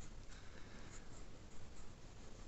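Faint scratching of a graphite pencil on watercolour paper as small currant shapes are sketched.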